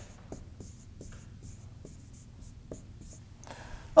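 Marker writing on a whiteboard: a run of short, faint strokes and small taps as figures are written out.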